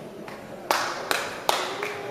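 Three sharp smacks about 0.4 s apart, with fainter taps around them.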